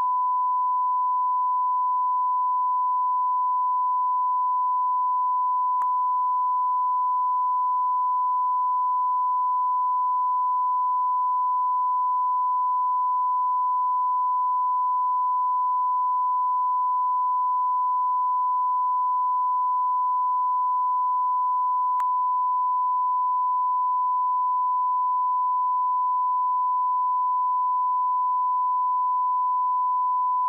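Steady 1 kHz line-up tone from a broadcast feed's test slate, one unbroken pitch at a constant level. Two faint clicks cut through it, one about six seconds in and another about twenty-two seconds in.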